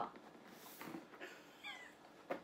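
A Shiba Inu gives a short, faint, high whine with a wavering pitch near the end, among soft rustles as it paws at a person's arm.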